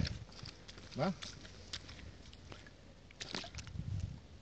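Faint scattered crackles and rustles of movement in dry grass at the water's edge, with a short cluster of them a little after three seconds in.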